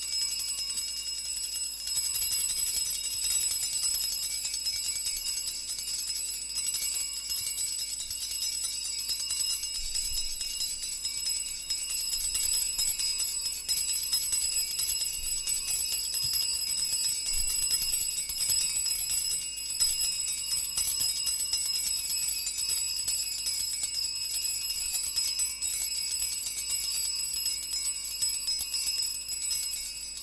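Small altar bells jingling continuously and evenly, a bright high shimmering ring.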